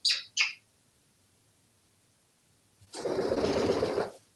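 African grey parrot giving two short, high chirps at the start, then about three seconds in, roughly a second of wing flapping as it flutters off the counter.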